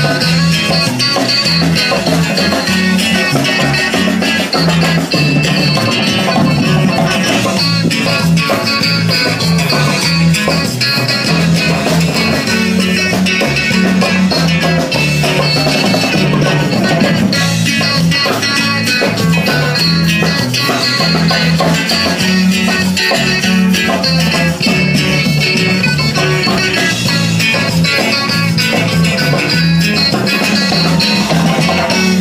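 Live band music played loud over loudspeakers, continuous, with guitar prominent over a steady bass line.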